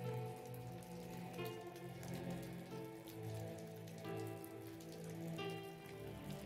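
Quiet ambient background music of held, sustained chords, with new notes coming in every second or so, over a steady sound of falling rain.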